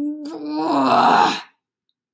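A woman's voice acting out a drawn-out straining groan, "Guuuuhhh!", like someone heaving something heavy. It turns into a loud breathy push of air and stops about one and a half seconds in.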